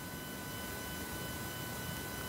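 Steady low background hiss with faint, constant high electrical tones, and no distinct sounds.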